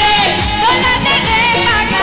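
A woman singing a Bengali pop song with a live band: electric guitar, keyboard and drums, with a steady drum beat under the sung melody.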